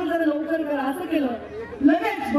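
Speech: a single voice talking continuously, raised and amplified, with no other sound standing out.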